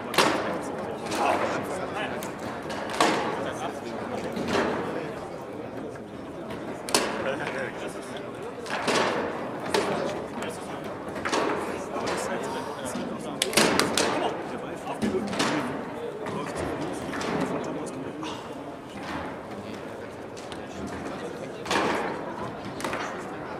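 Sharp, irregular knocks of table-soccer play, a hard ball hitting walls and men and rods banging their bumpers, every second or two, ringing in a large hall over a murmur of voices.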